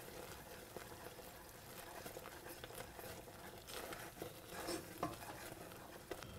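Faint stirring of a wooden spoon in a stainless steel saucepan of butter, brown sugar and cream, with soft bubbling and sizzling as the mixture comes back up to a boil. A few small ticks from the spoon against the pan.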